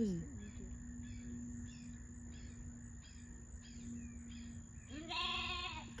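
A lamb bleats once near the end, a single wavering call lasting about a second. Faint insect chirping repeats about twice a second underneath.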